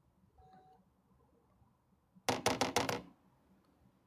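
A short clatter of about five sharp clicks in quick succession, a little over two seconds in, standing out against quiet room tone.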